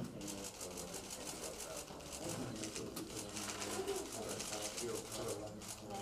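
Faint murmur of voices in a small room, with a fast, even run of faint clicks that breaks off briefly near the end.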